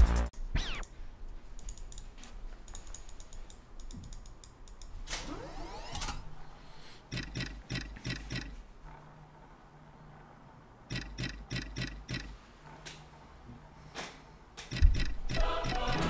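Novomatic Lord of the Ocean online slot game sounds, played quietly: a short rising sweep, then runs of evenly spaced clicks as the reels stop one after another, twice.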